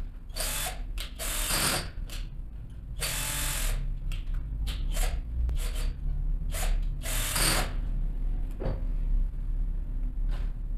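Cordless drill-driver running in short bursts as it drives wire terminal screws. There are four longer runs, each under a second, and several brief blips between them.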